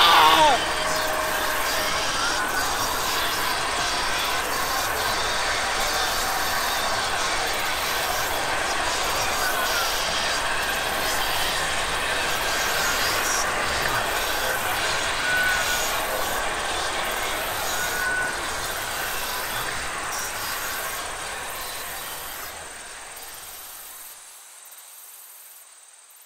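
A steady, noisy ambience with a faint high hum, holding level and then fading out over the last several seconds.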